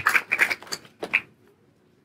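The trailing end of a man's speech through a microphone in the first second, then a pause of near silence with faint room tone.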